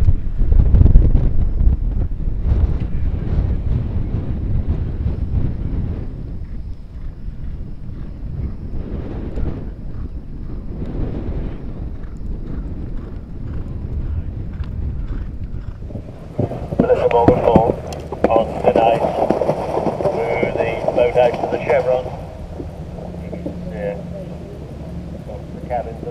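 Wind buffeting the microphone, loudest in the first few seconds, then indistinct voices for several seconds about two-thirds of the way through.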